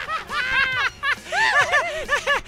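Men laughing hard in a Joker-style cackle, a run of quick 'ha' bursts that rise and fall in pitch and come faster in the second second.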